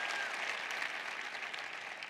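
A large audience applauding, the clapping slowly dying down.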